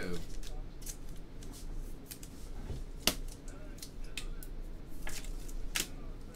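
Trading cards and a foil pack wrapper being handled: scattered crisp snaps and rustles of card on card, the sharpest about three seconds in.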